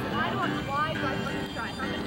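Indistinct chatter of several people's voices, with music playing in the background under held notes.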